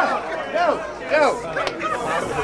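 A man's voice talking rapidly, with crowd chatter behind it and a single sharp click near the end.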